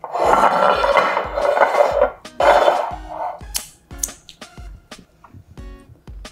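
Kitchenware being handled on the counter: a scraping, rattling noise for about two seconds, again for about a second, then a few light clinks. Background music with a steady beat plays underneath.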